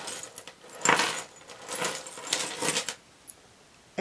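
Sterling silver jewelry clinking and jingling as a hand rummages through a pile of necklaces, chains and earrings, in a few short bursts over the first three seconds.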